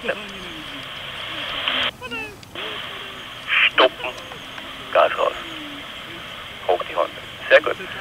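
Two-way radio receiving: a steady hiss that drops out briefly about two seconds in, then short snatches of a voice coming through from about three and a half seconds on.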